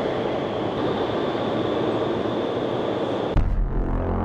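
Steady rush of air through an indoor skydiving wind tunnel blowing at about 150 km/h. About three seconds in, the sound shifts abruptly to a deeper, heavier rumble.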